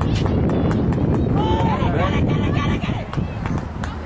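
Wind buffeting the camera microphone on a lacrosse sideline, with scattered clicks and a few short, high-pitched spectator shouts between one and two seconds in.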